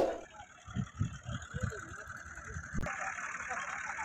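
Tractor engine running at low revs, with uneven low pulses and faint voices in the background. A sharp knock right at the start is the loudest sound.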